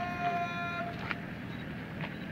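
A man shouting a drawn-out parade command, the last syllable held on one note for under a second, then steady outdoor background noise.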